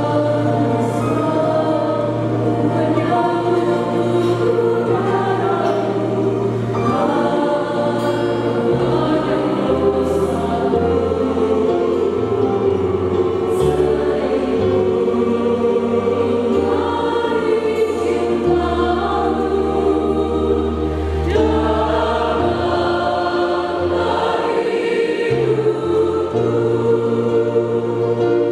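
A mixed church choir singing a Catholic hymn in Indonesian, with steady low notes held for a few seconds at a time underneath the voices.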